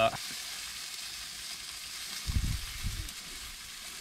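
A man chewing a mouthful of sausage-and-onion sandwich, with a few low muffled thumps a little past halfway, over a steady soft hiss.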